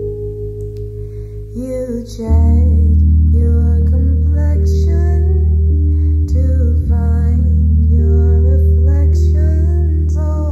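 A young woman singing a solo song over instrumental accompaniment with sustained low bass notes. The voice comes in about a second and a half in, and the accompaniment grows louder just after.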